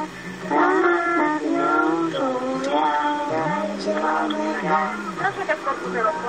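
A group of children singing a Polish song in chorus down a telephone line, long held notes that glide between pitches, sounding thin and phone-coloured. A lower voice holds a note along with them through the middle.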